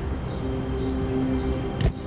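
Soft background music with sustained low notes, and a single sharp thump near the end as a car door shuts.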